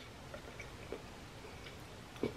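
Faint chewing of a bite of toasted grilled cheese sandwich, mouth closed, with a few soft clicks.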